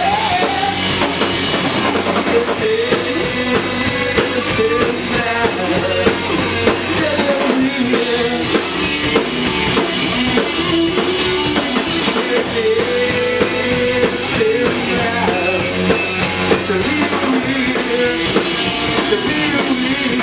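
Live rock band playing loudly and steadily, with drum kit, electric guitar and bass guitar.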